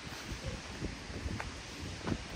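Outdoor ambience with wind buffeting the microphone: a steady hiss with an uneven low rumble and a couple of faint clicks.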